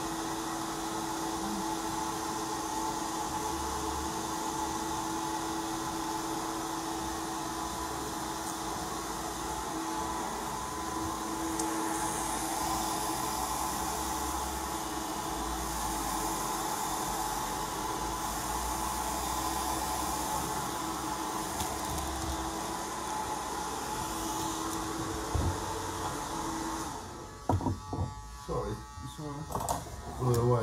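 Hand-held hair dryer blowing steadily, with a constant motor hum under the rush of air. It cuts off about three seconds before the end, and a few knocks and handling sounds follow.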